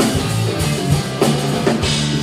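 Three-piece rock band playing live: electric guitar, bass guitar and drum kit, with regular drum hits and no singing in this passage.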